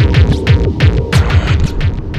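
Loud electronic music with a fast, heavy bass beat of about six deep thumps a second and crisp percussion hits on top.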